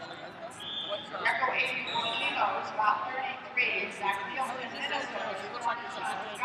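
People talking, several voices overlapping and indistinct.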